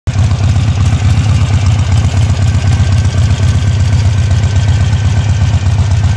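Harley-Davidson motorcycle's V-twin engine idling, loud and steady, heard close to its chrome exhaust pipes.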